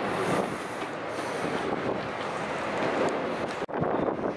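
A steady, even rushing noise with no distinct events. It cuts off abruptly near the end.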